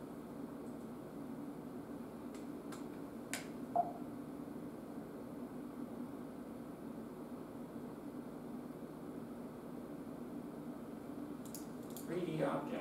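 Classroom room tone: a steady low machine hum, with a few faint clicks between two and three and a half seconds in and one brief louder blip near four seconds.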